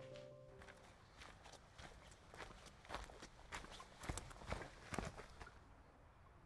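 Faint footsteps of a person walking, irregular steps about two a second, clearest from about three to five seconds in.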